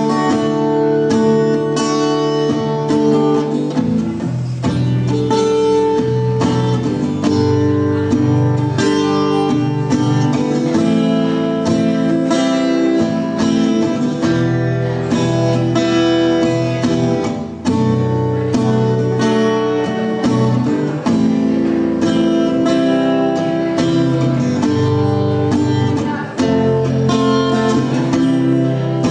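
Acoustic guitar played live, picking and strumming chords through an instrumental passage with no singing.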